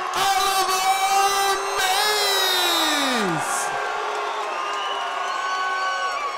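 A ring announcer's voice over the arena PA, stretching a fighter's name into long held syllables with a falling glide about halfway through, while the crowd cheers and whoops underneath.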